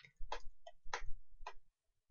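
About five short, sharp clicks over a second and a half from a computer mouse and keyboard being worked.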